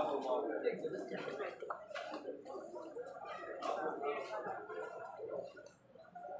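Indistinct voices of people talking, with no clear words; some brief light clicks among them.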